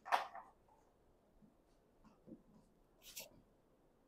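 Mostly quiet room with a few brief, faint noises: a short breathy sound at the very start and another short hiss about three seconds in.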